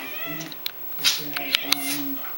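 Ragdoll cat yowling in protest while a large dog mouths its head: a wavering call at first, then sharp noisy bursts and a low drawn-out growl-like cry in the second half. The cat is upset at being played with.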